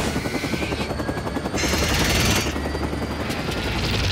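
Action-film sound effects of aircraft and destruction: a fast, even, rotor-like chopping over a deep rumble, with a burst of hiss about halfway through.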